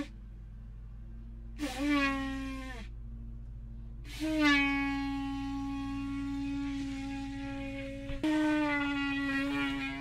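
A 3D-printed PLA bugle horn with hollow tubes is blown, giving three held notes at about one pitch: a short note that sags down in pitch as it ends, a long note of about four seconds, then a shorter one. The hollow print does work as a horn.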